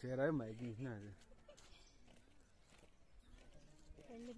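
A person's voice making a brief wavering sound without clear words, lasting about a second at the start, followed by faint background.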